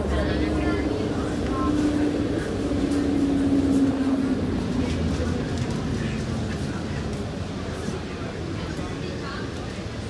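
Bus interior while under way: steady engine and road rumble with a hum that sinks slightly in pitch about halfway through, and passengers' voices faintly in the background.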